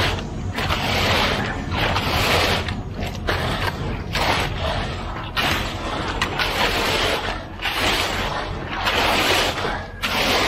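Concrete rake (come-along) being pulled through wet concrete, a gritty scraping swish about once a second, over the steady low hum of the concrete pump's engine.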